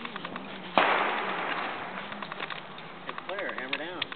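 A single gunshot about a second in, its report trailing off over the next two seconds.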